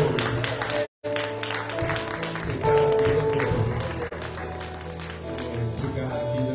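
Live church music with held chords over a bass line, accompanied by hand clapping. The sound cuts out completely for a moment about a second in.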